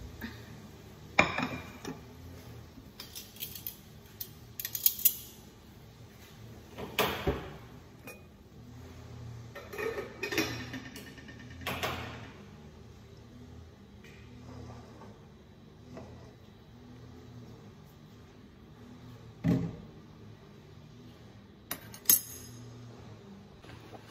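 Kitchenware being handled: a plate and metal tongs clattering and clinking in scattered knocks, the sharpest about a second in and near five, seven and twenty seconds. A low steady hum runs underneath.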